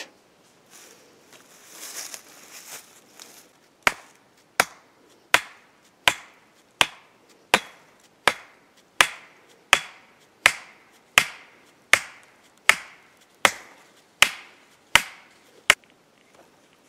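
A drive hammer pounding a thin, wood-reinforced steel tube stake into the ground. After a few seconds of rustling, it strikes about seventeen times at an even pace of a little under one blow a second, and each strike rings briefly.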